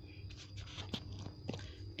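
A few faint, short clicks and scratchy taps over a low steady hum.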